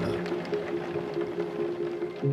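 Background music: soft, sustained held chords.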